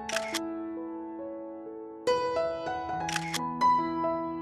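Gentle background music of sustained keyboard notes, with two short, crisp clicks: one right at the start and one about three seconds in.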